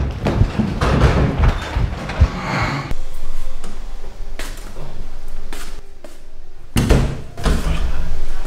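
Knocks and thuds from a wooden door: a busy stretch of handling first, then a few separate sharp knocks in the second half.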